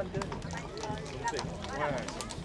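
Horses' hooves clip-clopping at a walk on a paved street, irregular sharp clicks, under the chatter of onlookers' voices.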